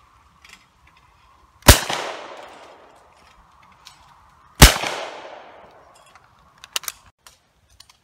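Two shotgun shots at a clay target, about three seconds apart, each loud and trailing a long echo that dies away over a second or more. A few light clicks follow near the end.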